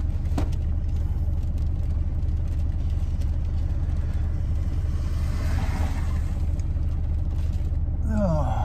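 Steady low rumble of a car running, heard from inside the cabin. About five seconds in, a rushing hiss swells and fades.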